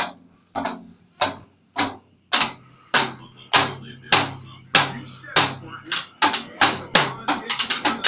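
Small plastic toy drum kit hit with light-up drumsticks in a steady beat of just under two hits a second, speeding up into a quick flurry of hits near the end.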